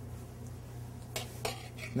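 Two light clinks of a metal spoon against a sauté pan, a third of a second apart about a second in, over a steady low hum.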